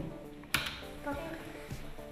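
A small stone dropped into a shallow tray of water: one sudden plop about half a second in, with background music underneath.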